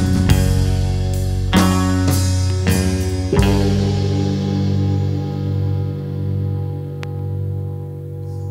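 Rock band music with guitar and drums, playing a few accented hits and then a held chord that rings on and slowly fades from a little under halfway through.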